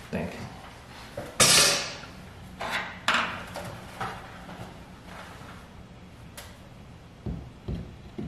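Short scrapes, clunks and clicks of things being handled, the loudest a brief rush about a second and a half in and a couple of low thumps near the end, over a faint steady low hum.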